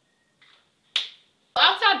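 A single sharp click about a second in, from the marker and metal ruler being handled on the pattern paper. Speech begins near the end.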